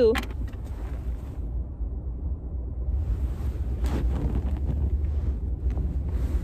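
Steady low rumble of a car heard from inside the cabin, with rustling and a brief knock from the phone being handled around the middle.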